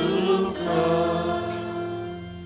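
Church choir singing a short sung response to a petition, the final chord held and fading away near the end.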